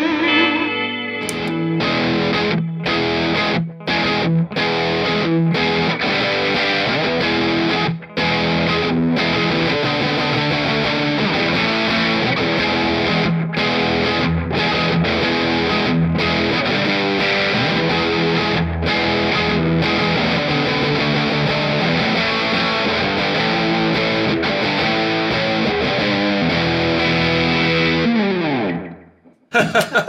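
Distorted electric guitar playing a rock riff through effects pedals, with short stops in the rhythm. Near the end the notes slide down in pitch and the playing cuts off.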